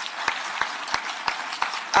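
Audience applauding: many hands clapping in a steady crackle, with a few sharper individual claps standing out.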